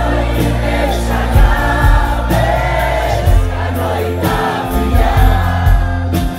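Live pop-rock band performing a song: amplified electric guitar, bass and drums with steady beats, and singing over them.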